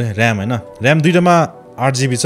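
A man's voice talking in a low register, with drawn-out vowels and short pauses, over faint background music.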